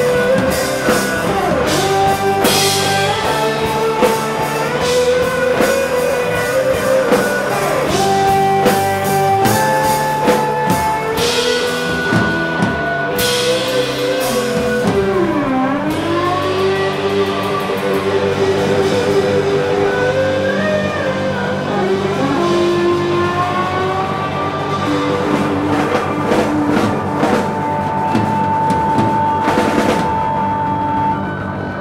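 Rock band playing an instrumental passage: an electric guitar plays a lead of long held notes with bends and slides over drums and bass.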